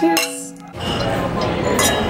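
Drinking glasses clinking together in a toast: one sharp clink just after the start over music, then the music gives way to a noisy room and wine glasses clink again near the end.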